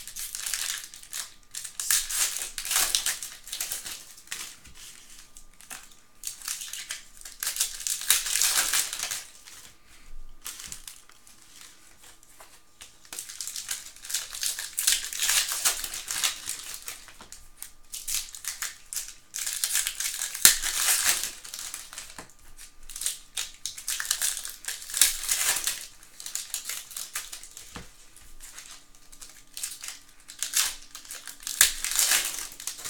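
Plastic trading-card pack wrappers crinkling and tearing as packs of Panini Prizm football cards are opened by hand, in repeated bursts of rustling with quieter stretches between.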